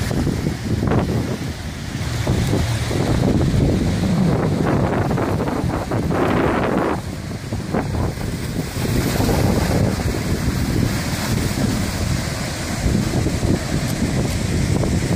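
Lucky Peak Dam's rooster tail, a high-pressure jet of water shooting from the dam's outlet, rushing and spraying onto the river in a loud continuous roar. Wind gusts buffet the microphone throughout.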